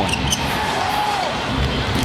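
Basketball dribbled on a hardwood court, with steady arena music playing underneath.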